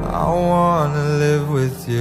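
Soundtrack love song: a male singer holds long, slowly bending notes over soft accompaniment, with a short break near the end before the next line.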